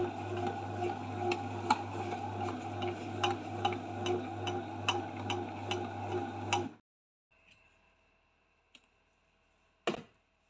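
SilverCrest SBB 850 D1 bread maker kneading dough: its motor hums steadily under a run of repeated sharp ticks. The sound cuts off abruptly about seven seconds in, leaving near silence.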